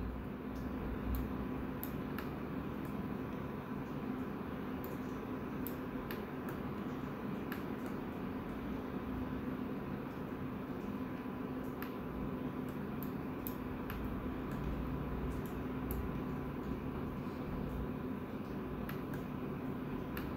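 Steady hum and hiss of a computer and room, with scattered faint clicks, likely mouse clicks.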